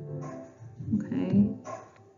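A woman's voice spelling out a web address letter by letter, in two short bursts.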